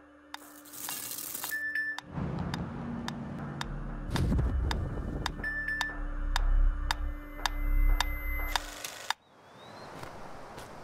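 Pendulum metronome ticking evenly, about two ticks a second. About two seconds in a low drone swells up under the ticks, with a few short high beeps, and it all cuts off suddenly near the end, leaving a soft hiss.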